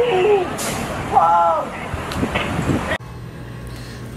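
City street noise with traffic and a person's voice calling out briefly twice. About three seconds in, it cuts off suddenly to a quieter, low steady hum.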